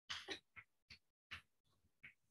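Chalk writing on a blackboard: about five short, faint scratchy strokes.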